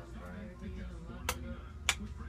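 Two sharp clicks, one about a second in and one near the end, over a low steady hum and faint background music.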